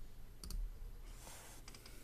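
Faint clicking: a sharp double click about half a second in, a short hiss around a second in, and a few small clicks near the end, over a low steady hum.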